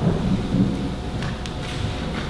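Low rumbling with two soft thumps, near the start and about half a second in: a congregation shifting and getting to its feet in the pews.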